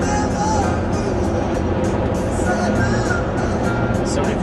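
Music playing on a car stereo inside a moving car's cabin, over steady engine and road noise.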